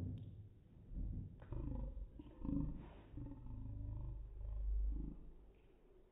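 Room audio slowed far down for slow motion: deep, drawn-out rumbling in several swells, with a lowered, voice-like moan a couple of seconds in, fading out near the end.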